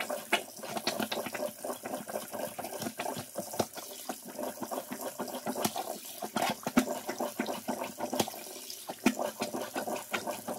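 Water running and splashing in a sink, with many small sharp clicks and knocks scattered through it.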